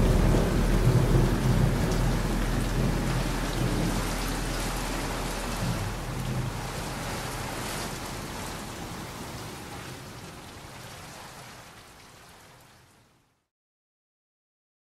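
Rain and thunder storm ambience at the tail of a track, fading slowly and cutting to silence about thirteen seconds in. The last low notes of the music die away under it in the first few seconds.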